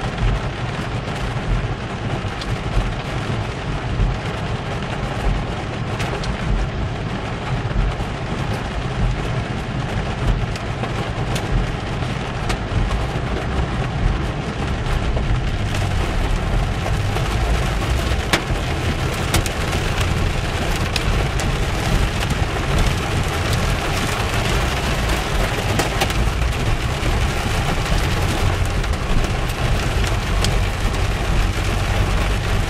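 Heavy rain beating on a car's roof and windshield, heard from inside the car: a dense, steady patter with many sharp ticks and a low rumble underneath, growing heavier about halfway through.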